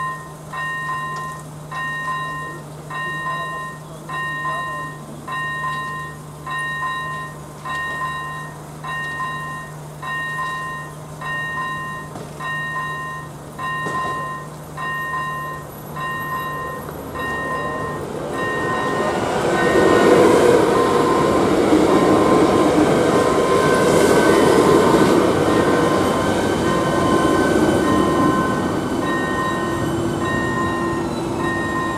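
AŽD ZV-01 electronic level-crossing bell dinging a two-tone note about once every three-quarters of a second, warning of an approaching train. About 18 seconds in, a passenger train's running noise builds up and becomes the loudest sound, nearly covering the bell, which shows plainly again near the end.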